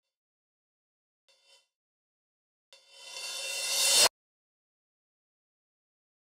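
A synth effect note played back from the DAW: a noisy, hissing sweep that swells in loudness for about a second and a half and then cuts off suddenly, with a faint short blip before it.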